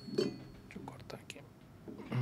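Soft whispered speech with a few faint clicks of a knife working on a cheese board. A thin metallic ring left from a clink just before dies away in the first half second or so.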